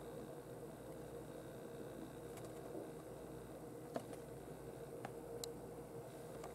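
Faint handling of a carded die-cast car in its plastic blister pack: a few soft, scattered clicks over a steady faint hum.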